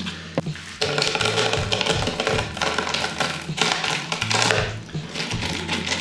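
Small potting rocks rattling and clattering in a plastic planter as they are poured and shifted by hand: a dense run of small clicks starting about a second in. Background music plays underneath.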